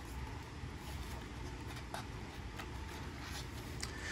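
Faint handling of a hardcover picture book as a page is turned, a few soft paper ticks over low room noise.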